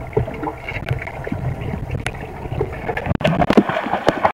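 Muffled, churning water heard underwater as a dog swims down to the bottom of a swimming pool. About three seconds in, the sound turns brighter and louder with water splashing.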